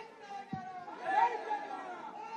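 Several voices talking and calling out over one another, with one voice louder about a second in.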